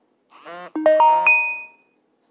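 A short musical chime of four quick notes stepping upward, each ringing on and fading within about a second, over a brief voice-like sound just before and under it.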